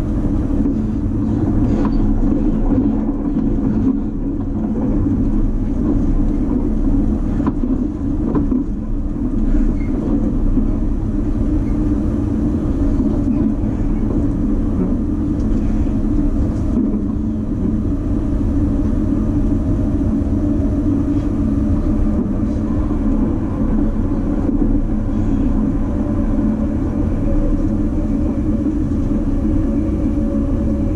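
Running noise of a JR East E257 series limited-express train at speed, heard inside the passenger car: a steady rumble of wheels on rail. A faint steady hum comes in about halfway through.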